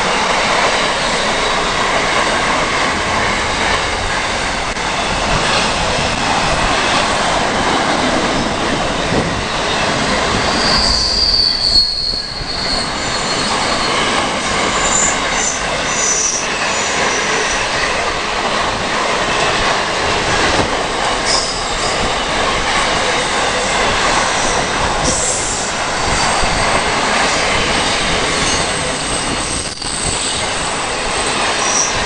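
Container freight train's wagons rolling past close by: a continuous loud rumble and clatter of steel wheels on rail. Brief high-pitched wheel squeals about eleven seconds in and a few more later on.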